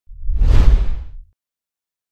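A logo-reveal whoosh sound effect with a deep rumble underneath. It swells for about half a second, then fades out a little over a second in.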